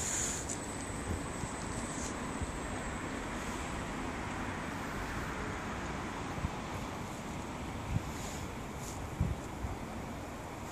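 Steady outdoor noise of wind on the microphone over city traffic, with a few low buffets of wind on the microphone near the end.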